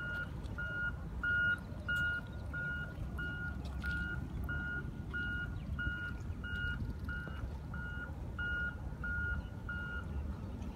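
A vehicle's reversing alarm beeping steadily at one pitch, about one and a half beeps a second, over a low background rumble.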